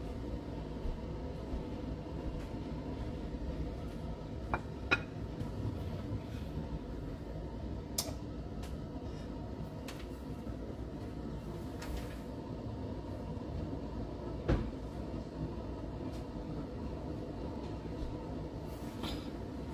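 Steady low room rumble with a few light clicks and knocks from a ceramic plate of hard taco shells being handled on a stone countertop; the sharpest knocks come about five seconds in and again near fifteen seconds.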